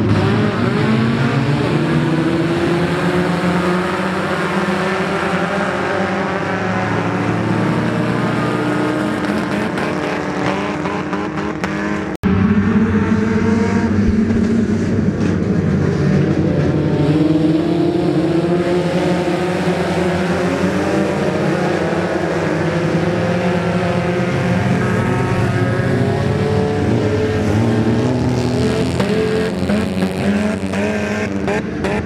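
Several dirt-track race cars' engines running together as they lap the oval, their notes rising and falling as they pass. The sound drops out for an instant about twelve seconds in.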